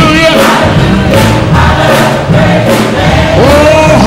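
Loud live gospel music: a church choir singing with instrumental accompaniment, continuous throughout.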